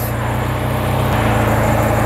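Turbocharged Mazda RX-8's two-rotor Wankel engine idling steadily, heard from the open engine bay, its low note shifting slightly about halfway through.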